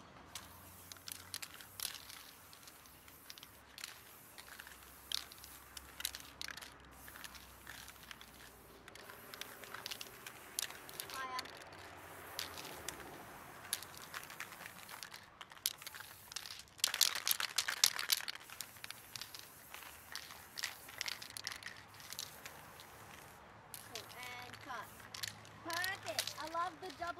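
A light jacket's fabric rustling and crinkling in irregular bursts as the wearer swings his arms, loudest in a dense cluster about two-thirds of the way through.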